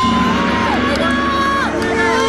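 Players cheering and whooping just after a goal is scored, over background music with long held tones.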